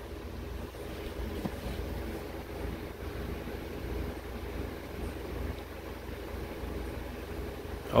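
Steady low background hum, with faint paper sounds as the pages of a prayer book are turned.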